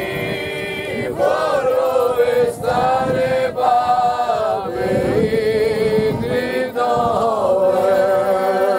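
A folklore group singing a traditional song together as they walk, several voices holding long notes in harmony. The song moves in short sung lines with brief breaths between them.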